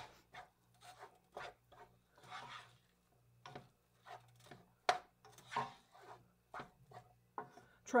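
Wooden spoon stirring rice and ground beef in a skillet: irregular light taps and clicks of the spoon against the pan, with a few soft scraping strokes.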